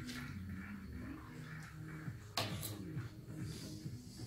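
A fork and knife clinking against a plate, two sharp clicks, one at the start and a louder one about two and a half seconds in, over a low wavering hum.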